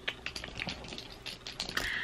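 Small glass travel-size perfume bottles clicking and knocking together as a hand picks through them in a pouch: a run of light, irregular clicks.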